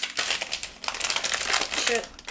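Plastic tea packet crinkling and rustling in quick irregular crackles as it is handled and worked open.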